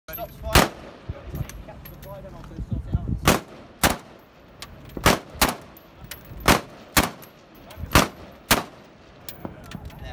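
SA80 (L85) 5.56 mm rifle fired in aimed single shots: about nine sharp cracks at irregular intervals, several in quick pairs about half a second apart, with fainter shots between them and a low steady hum underneath.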